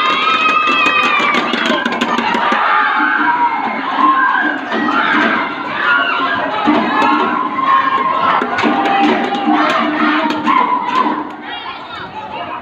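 A crowd of schoolchildren cheering and shouting, with many high voices overlapping in held shouts.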